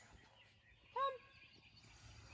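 A woman's voice calling "Come" once to a dog, a single rising-then-falling call about a second in, over faint outdoor background noise.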